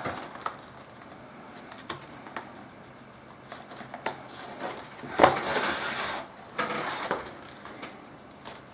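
Hand-sewing leather: a leather strap handled and wax linen thread pulled through the stitch holes, heard as scattered light clicks and rustles, with two louder drawn-out pulls about five and seven seconds in.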